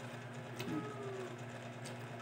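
A steady, low mechanical hum, with a faint short pitched sound a little under a second in.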